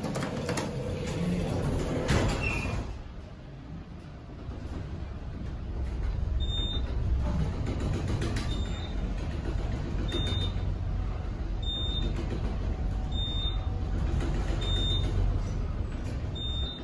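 Fujitec traction elevator: the car doors slide shut in the first few seconds, then the car rises with a steady low hum. A faint short high beep sounds about every second and a half as it passes each floor.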